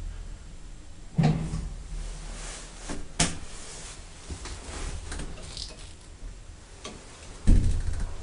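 Unilift elevator: a low machinery hum dies away as the car stops, followed by knocks and clunks of its doors being handled, the loudest a heavy thump near the end.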